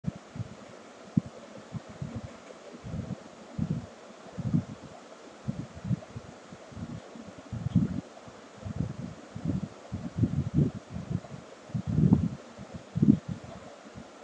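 Irregular low rustles and soft bumps on a desk microphone, a few each second, over a faint steady hiss.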